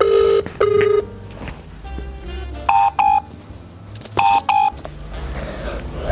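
An outgoing call ringing through a smartphone's loudspeaker: three pairs of short electronic beeps, the first pair lower-pitched than the other two.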